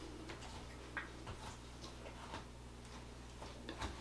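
Quiet room tone: a steady low hum with a few faint, irregular small clicks.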